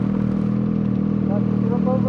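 Ski-Doo snowmobile engine idling steadily at standstill, with no revving.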